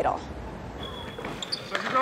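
Basketballs bouncing on the court during a team warm-up in a large, near-empty arena, faint under the room's ambience.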